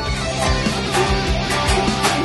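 Rock music led by electric guitar chords over a steady drum beat.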